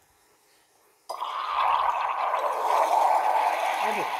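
Steam from a Bellman CX-25P stovetop steamer's wand hissing into a pitcher of milk. It starts suddenly about a second in and runs on loud and steady. The milk froths up into large, coarse bubbles, which the maker puts down to not having purged the wand first.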